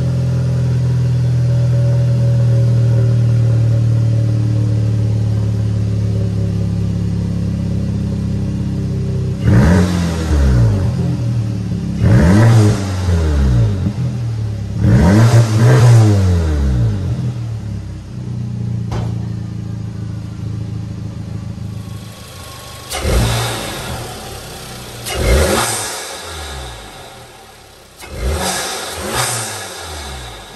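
2016 Volkswagen Passat 1.8 TSI turbocharged four-cylinder, straight-piped with the rear muffler deleted, idling warmed up. It is revved three times, a few seconds apart, each rev rising and falling back to idle. Later come three short, sharp throttle blips.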